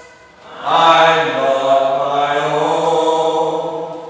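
A preacher's voice chanting one long phrase at a steady, sung pitch, starting about half a second in and fading near the end.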